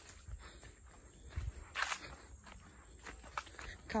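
Footsteps crunching on dry leaf litter and dirt, irregular short crackles with one louder step about two seconds in, over a low rumble.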